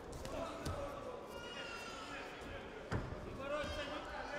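A few short dull thuds from a boxing bout in the ring, the loudest about three seconds in, with men shouting.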